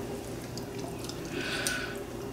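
Quiet mouth sounds of a man eating noodles, with a short soft slurp about a second and a half in.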